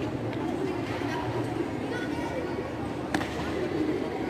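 Murmur of many people talking at once, echoing in a large hall, with no clear words. One sharp slap about three seconds in.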